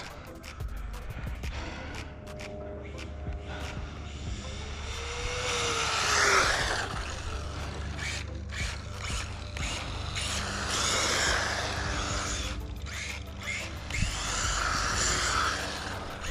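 1/12-scale Losi NASCAR Grom RC car with a Furitek Scorpion 5600kV brushless motor running passes on asphalt at 70% throttle. The motor whine and tyre noise swell and fade twice, loudest about six seconds in and again about eleven seconds in.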